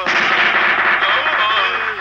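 A film sound effect: a loud burst of gunfire-like noise that starts suddenly, with voices crying out under it.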